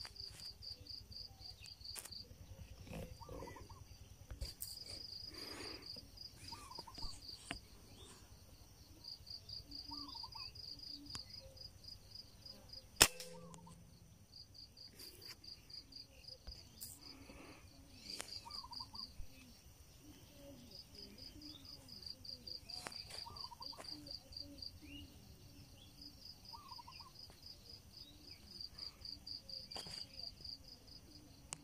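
A single sharp shot from a 5.5 mm PCP air rifle about halfway through, the loudest sound. Throughout, an insect trills in repeated high pulsed bursts, with short bird chirps every few seconds.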